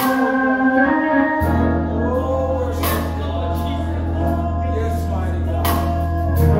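Live gospel praise singing by several voices with organ accompaniment. Deep sustained bass notes come in about a second and a half in, and a few sharp percussive hits cut through the music.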